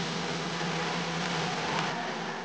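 Uplifting trance in a breakdown: a loud white-noise build-up swells while the held synth chords and the bass fade out.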